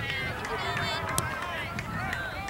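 Several voices of youth soccer players and sideline spectators shouting over each other during play, with one sharp click about halfway through.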